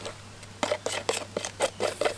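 Stone Fix slurry being stirred in a small plastic tub: a quick run of short scrapes and clicks against the tub, starting about half a second in, as the powder and water are worked into a wet, lump-free mix.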